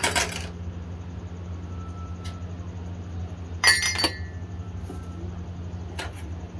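Ceramic mugs clinking against each other and against a plastic tray as they are set out. There is a short clatter at the start and a louder, ringing clink a little under four seconds in, over a steady low hum.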